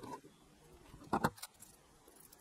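Metal side-cutting pliers clicking against the nickel connector strips and steel casings of laptop lithium-ion cells as the pack is cut apart: a sharp click at the very start and a quick double click about a second in, with soft handling sounds between.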